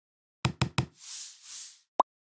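Sound effects for an animated logo intro: three quick knocks in under half a second, then two soft whooshes, and a short pop near the end.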